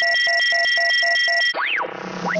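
Electronic sound effect: a steady high tone with rapid beeps pulsing about five times a second. About one and a half seconds in, it cuts to swooping tones gliding down and up in pitch.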